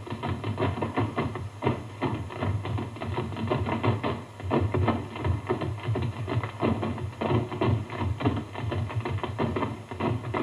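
Tap dancing: rapid runs of shoe taps clicking and knocking on a hard floor, with music behind.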